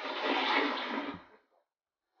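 Toilet flushing: a short knock, then a rush of water that fades away after about a second and a half.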